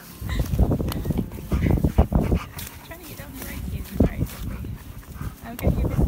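Husky-malamute cross making a run of short, irregular vocal sounds while begging for a biscuit.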